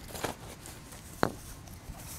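Faint rustling of a sleeping pad's carry bag being handled, with one short sharp click a little past the middle.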